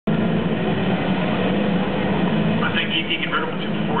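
A supercharged 306 ci V8 in a Mustang GT idling steadily, running rich on two badly burnt plug wires. A PA announcer's voice comes in over it in the last second or so.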